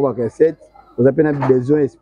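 A person's low-pitched voice in two short phrases, the second starting about a second in.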